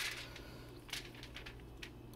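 Aluminium foil crinkling under a hand placing vegetables and herbs on a raw fish, in brief sharp rustles: one at the start and one about a second in, then a few faint ticks.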